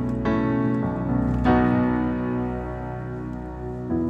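Keyboard with a grand piano sound playing sustained chords. A chord over a B bass, the 4-over-5 (A over B) lead-in, is struck about a quarter second in and again about a second and a half in. It then moves to an E chord near the end, entering the song in E.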